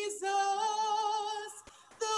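A woman singing unaccompanied, holding one long note with a slight vibrato, then breaking off briefly near the end before the next phrase.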